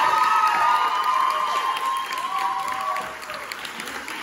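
Audience clapping and cheering, with high whoops over the applause; the cheering thins out about three seconds in while the clapping carries on.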